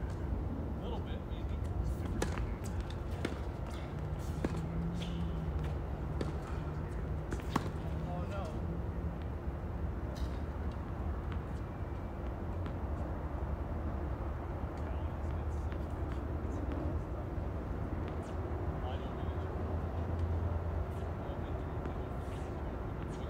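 Faint, indistinct voices of people talking at a distance over a steady low rumble, with a few sharp clicks or taps scattered through.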